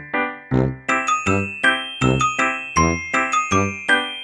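Background music: a bell-like mallet melody of quick struck notes, about four a second, over a low beat.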